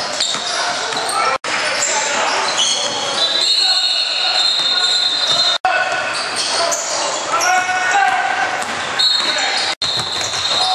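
Live sound of a basketball game in a large, echoing gym: a ball bouncing, players' and spectators' voices, and high-pitched squeaks from sneakers on the hardwood court. The sound cuts out abruptly three times, at the joins between clips.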